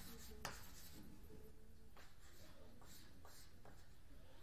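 Chalk writing on a blackboard: faint, scattered taps and short scratches.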